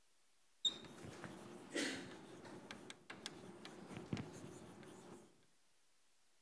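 Chalk writing on a blackboard: faint scratching broken by many short taps and ticks as the letters are formed. It starts with a sharp tick just under a second in and stops about a second before the end.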